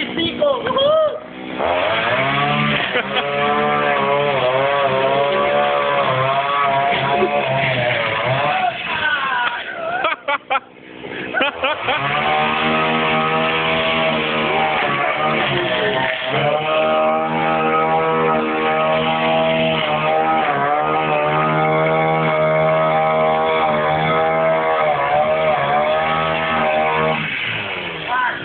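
Gas-powered string trimmer engine running at high revs, its pitch wavering up and down at first, dropping briefly about ten seconds in, then holding steady at full throttle while cutting grass.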